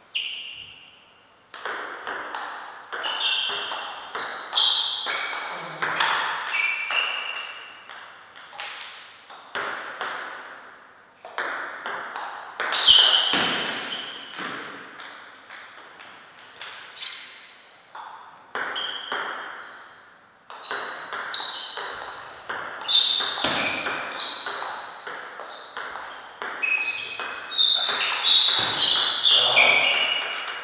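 Table tennis ball struck back and forth in rallies: quick, sharp clicks off the rackets and the table, each with a short, high ringing. Breaks come between points, about ten seconds in and again near the twenty-second mark.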